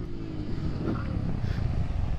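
Honda Grom's small single-cylinder engine dropping back with the throttle closed while the front brake holds the bike up on its front wheel in a stoppie. A steady low rumble of wind and road noise runs under it, and the engine note fades in the first half second.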